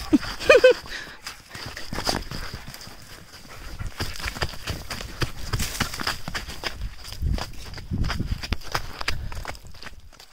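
Quick running footsteps on dry, sandy ground, uneven knocks and thuds with the phone jostling in the hand, after a short high-pitched voice about half a second in.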